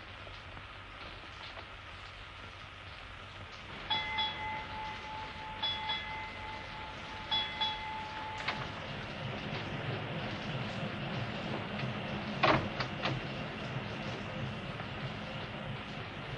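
Steam riverboat running: a steady churning, rushing noise, with a high whistle-like tone held for about four seconds from about four seconds in. A louder low rumble builds after that, and there are two sharp knocks near the end.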